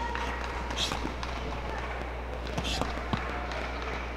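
Live ringside sound of a boxing bout: voices shouting from around the ring, scattered knocks and scuffs of footwork and gloves, and a couple of short sharp hisses, over a steady low hum.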